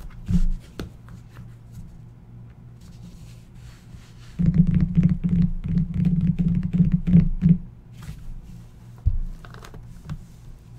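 Hands scratching and rubbing at the outer box of a sealed Flawless Football card box. A dense run of scratches lasts about three seconds from the middle on, with a few single knocks around it.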